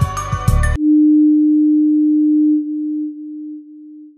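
Background music cuts off abruptly under a second in. It gives way to a single loud, steady pure tone, the sting of a closing logo ident, which holds for about two seconds and then fades out in steps.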